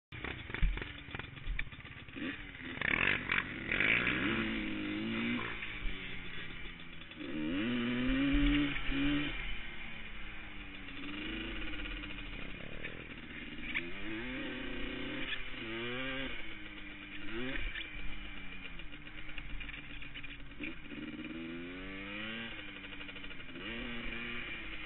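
An ATV engine heard from on board, revving up in a series of rising pitches that each fall back sharply as it shifts through the gears.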